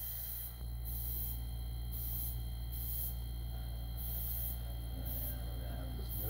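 Airbrush compressor running with a steady low hum, while the airbrush hisses in short on-and-off spurts as its trigger is pulled to spray fast black lines.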